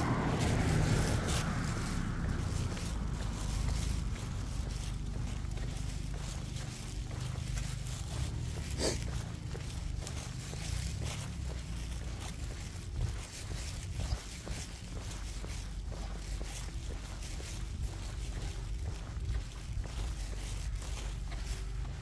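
Footsteps of a person walking a small dog on a concrete sidewalk, over a steady low rumble, with frequent light clicks and one sharper click about nine seconds in.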